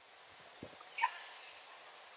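A quiet pause with a faint steady hiss from the call's microphone, a small knock about two-thirds of a second in, and a brief faint pitched sound about a second in.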